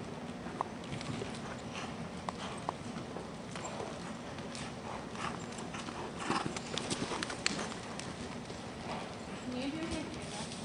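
Hoofbeats of a horse going round a jumping course on the dirt footing of an indoor arena, a steady run of soft strikes that are loudest and thickest a little after halfway, as the horse passes close and jumps.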